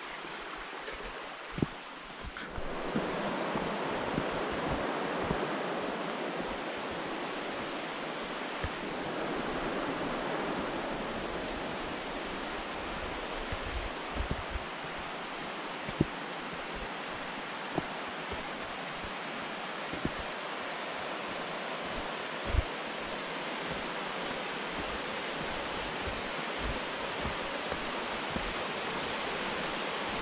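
A mountain creek rushing over rocks, a steady wash of water that comes in louder about two seconds in. A few soft low knocks are scattered through it.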